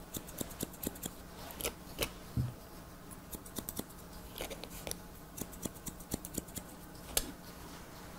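Haircutting scissors snipping wet hair: quick, irregular runs of short crisp snips with brief pauses between them.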